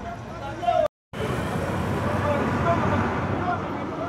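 Outdoor street noise with people's voices, broken by a sudden short silence about a second in where the footage is cut; after it a louder, steady noisy background with faint voices runs on.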